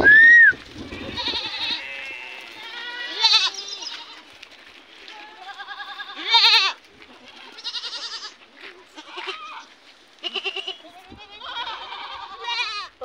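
A pen full of young goats, mostly Sojat bucks, bleating over and over, many quavering calls overlapping one another. The loudest calls come right at the start and again about six seconds in.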